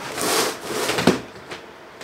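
Rummaging: items being shuffled and rustled by hand for about a second, with a sharp clack just after a second in, then it goes quieter.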